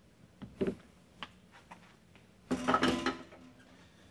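Espresso gear being handled on a countertop: a couple of light knocks and a click, then a louder metallic clatter about two and a half seconds in that lasts under a second.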